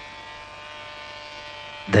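A steady electrical hum or buzz on the film's soundtrack, with a man's voice starting just at the end.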